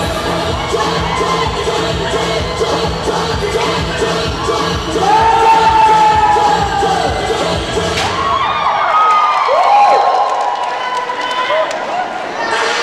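Dance music with a steady beat, with a crowd cheering and shouting in high voices over it. About three-quarters of the way through, the bass drops out of the music, leaving the cheers and shouts on top.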